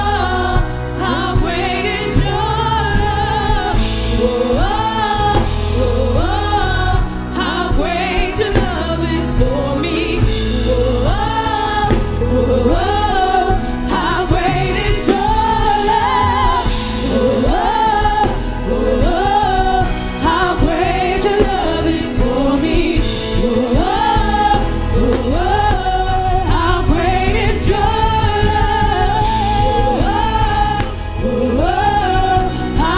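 Live gospel worship song: a group of singers singing together over keyboard, bass and drums, with a steady beat.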